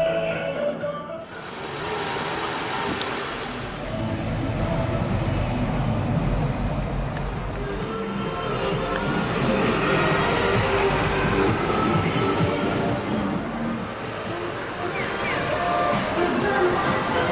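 Music playing from an advertising truck's loudspeakers, mixed with street traffic noise and the low rumble of passing vehicles.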